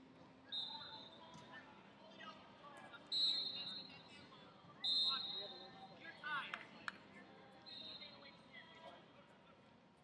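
Murmur of voices across the wrestling hall, broken by four short, high-pitched referee whistle blasts from the mats. The loudest come a little after three and five seconds in.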